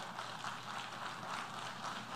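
A pause in speech filled by a faint, steady hiss of hall room tone picked up by the lectern microphones.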